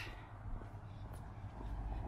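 Quiet street ambience: a low, steady rumble of distant road traffic.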